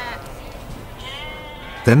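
Sheep bleating twice: one bleat ends just after the start, and a second bleat of under a second comes about a second in.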